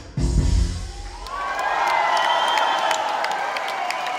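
A live rock band's closing chord with a drum hit, ringing out and dying away within the first second. Then the audience cheers, whistles and applauds, the cheering swelling up.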